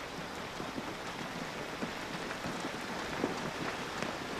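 Steady rain falling: an even hiss with scattered small drop ticks.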